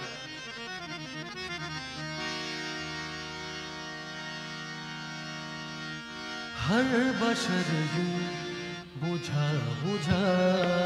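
Harmonium playing a few notes, then holding a steady chord. About two-thirds of the way in, a man's voice enters singing a slow, gliding ghazal line over it, louder than the harmonium.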